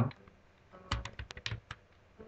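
Computer keyboard keystrokes: a quick run of several key clicks about a second in, typing a password.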